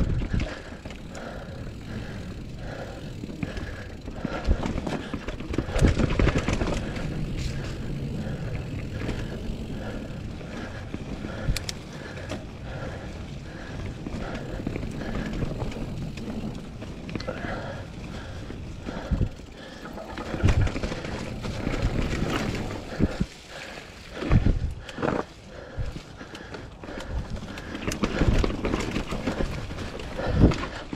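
Mountain bike riding a dirt trail: tyres rolling over packed dirt and dry leaves, with rattles and knocks from the bike over roots and bumps, several of them loud.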